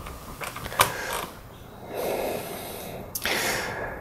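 A man breathing close to the microphone, with a short sharp click about a second in. There are two soft breaths, and the second, near the end, is louder and brighter.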